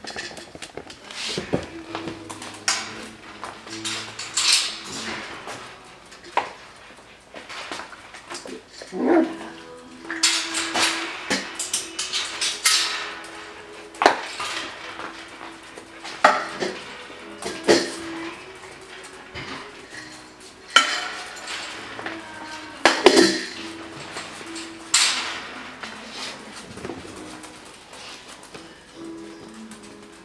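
Coton de Tulear puppies play-fighting in a wire pen: irregular scuffles and sharp clinks and rattles come every second or two, with a low steady tone underneath at times.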